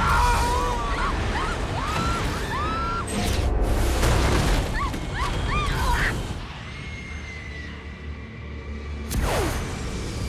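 Action-film sound mix of air rushing through a torn-open airliner cabin, a loud steady rush with several short rising-and-falling screams in the first six seconds. A sudden boom with a falling whoosh comes near the end, over music.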